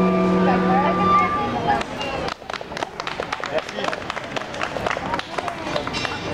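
A violin and acoustic guitar end a piece on a held final chord that stops about one and a half seconds in. Scattered hand clapping from a small audience follows, mixed with voices talking.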